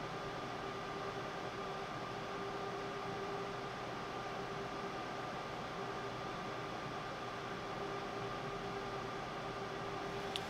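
Steady hum of fans and running equipment in a small workshop: an even hiss with a few faint, constant whining tones and no change throughout.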